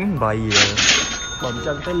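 People talking, with a short hissing burst about half a second in, followed by a few faint lingering ringing tones.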